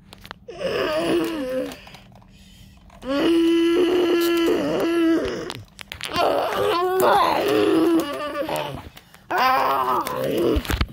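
A voice making dinosaur roar and growl noises for toy dinosaurs: four long, drawn-out vocal roars with short pauses between, the second and third the longest.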